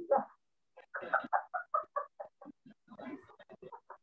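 A woman laughing in a quick run of short 'ha' syllables, about six a second, tailing off and picking up again near the end, heard over a video-call link.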